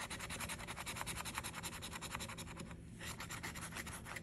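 The coating of a scratch-off lottery ticket being scraped away in rapid back-and-forth strokes, about eight to ten a second, with a short break near three seconds in.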